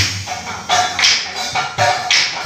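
Percussion accompanying an Assamese Nagara Naam devotional song: a steady beat of sharp strikes, with the voices dropping out at the start.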